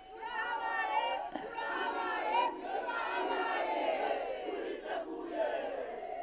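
A large rally crowd cheering and shouting together, swelling up just after the start and easing off near the end.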